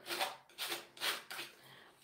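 Acrylic paint being spread across a canvas, a few short rubbing strokes.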